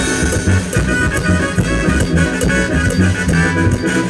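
Latin dance music played by a band, with a steady, repeating bass beat.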